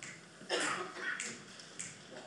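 Finger snaps in a steady beat, about one every two-thirds of a second, counting off the tempo for a jazz band just before it comes in.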